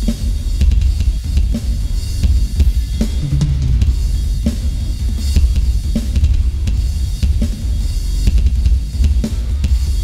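Electronic drum kit played fast, heavy metal style: rapid double bass drum strokes from a DW 4000 double pedal under snare hits, tom strikes and cymbal crashes.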